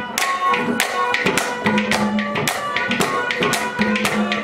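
Instrumental interlude of live Haryanvi ragni accompaniment: drum and sharp, bright percussion strikes keep a quick rhythm of about three to four beats a second over steady held notes.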